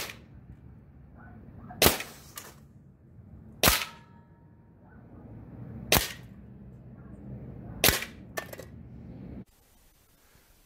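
Evanix Max Air .30-calibre PCP air rifle firing five sharp shots about two seconds apart, a couple of them followed by a fainter click.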